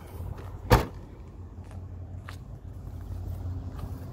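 A Volkswagen Jetta MK6's trunk lid being shut: a single loud slam about a second in. A steady low rumble runs underneath.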